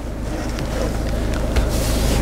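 Rushing, wind-like noise on the handheld camera's microphone as it is moved around the centre console, slowly growing louder, over a steady low rumble from the Land Rover Freelander 2 SD4's idling 2.2-litre diesel engine.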